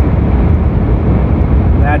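Steady low rumble of a car's engine and road noise heard inside the cabin while driving. A man's voice briefly starts near the end.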